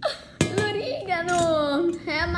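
A child's voice in a long, drawn-out exclamation, with a sharp knock just before it, about half a second in.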